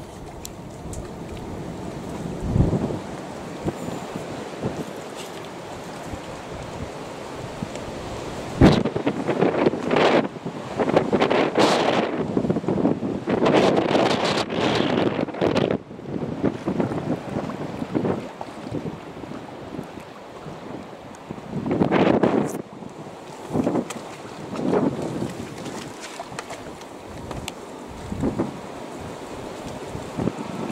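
Wind buffeting the microphone in irregular gusts, loudest from about nine to sixteen seconds in and again around twenty-two seconds, over the wash of water along the hull of a motor cruiser under way.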